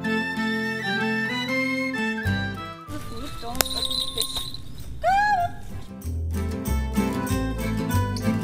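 Background music: a song with a steady bass beat, starting right at the opening.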